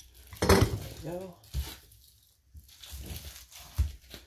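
Plastic shrink-wrap crinkling as it is pulled off a hardback book, with a few sharp knocks of the book being handled on a countertop, the loudest about half a second in.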